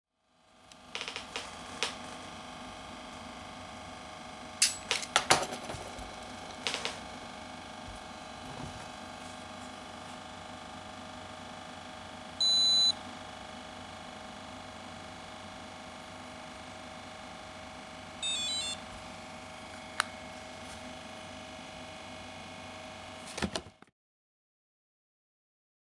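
Blood glucose meter: one short, loud, high beep about halfway through as the test strip takes the blood sample, then about six seconds later a quick run of warbling beeps as the reading comes up. Sharp clicks from handling the meter and lancet come earlier, all over a steady low room hum.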